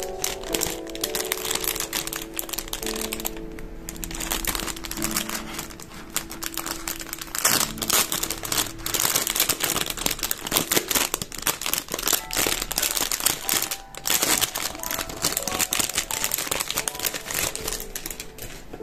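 A clear plastic packaging bag crinkling and crackling as hands handle and open it, getting louder and busier about seven seconds in. Soft background music plays underneath.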